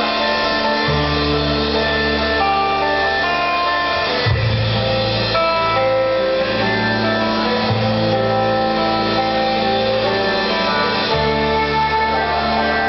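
A live band playing amplified rock music led by guitars, over long held bass notes that change every three seconds or so.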